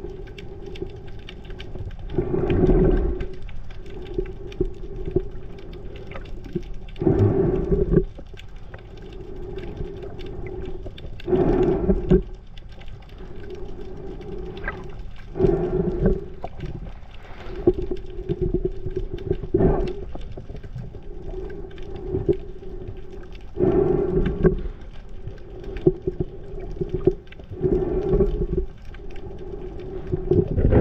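Underwater sound around an offshore oil platform: a steady low hum runs throughout, and a louder rushing surge of water comes about every four seconds.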